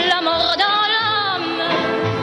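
A female singer holding sung notes with a strong vibrato over a pop accompaniment; her voice falls away about a second and a half in, leaving the instruments.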